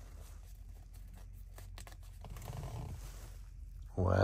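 Faint handling of Pokémon trading cards and their foil pack wrapper: small crinkles and clicks over a low steady hum.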